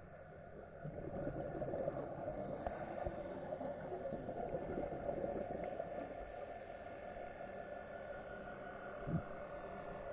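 Underwater ambience heard through an action camera's waterproof housing: a steady, muffled crackling hiss, with a couple of low knocks near the end.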